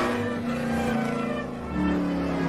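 Race car engine sound from an animated film's soundtrack, played in reverse, mixed with the film's reversed music score. The engine tones are held steady, and a louder new tone comes in near the end.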